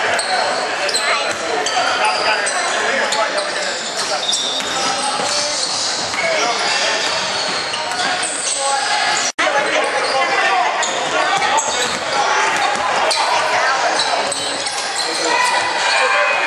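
Live basketball game sound echoing in a large gymnasium: a ball bouncing on the hardwood court amid indistinct shouting and chatter from players. The sound cuts out for an instant about nine seconds in.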